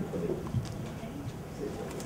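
Low murmur of voices in the room, with a few light clicks as a microphone is handled and adjusted on its stand.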